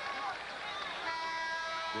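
Arena horn or buzzer sounding one steady, flat note for about a second, starting about halfway through, over steady crowd noise.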